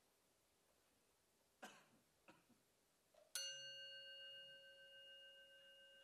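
A single struck metal chime rings out a little over three seconds in and sustains, slowly fading, a clear ringing note with several higher ringing tones above it. Two faint short knocks come just before it.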